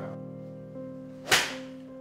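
A golf iron swung through and striking a ball off a hitting mat: one sharp, loud crack about a second and a third in, with a brief tail after it. Steady background music plays underneath.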